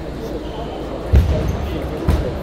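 Table tennis rally in a large hall, with two heavy low thumps, the first about a second in and the loudest, the second at the very end, over steady chatter from other tables.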